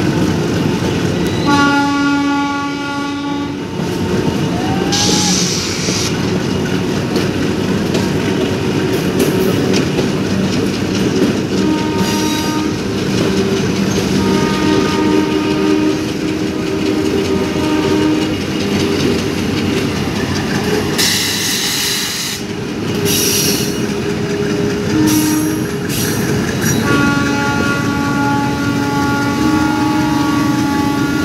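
Broad-gauge passenger train running alongside, its coaches rumbling and clattering over the rails, while diesel locomotive horns sound several times: a blast about two seconds in, more around the middle, and a long one starting near the end. Bursts of high-pitched noise rise above the rumble twice.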